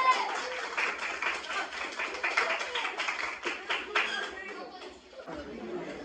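A group of schoolboys clapping by hand, a quick irregular run of claps that thins out and stops about four and a half seconds in, with boys' chatter underneath.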